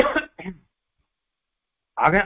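A man clearing his throat: two short, sharp bursts right at the start.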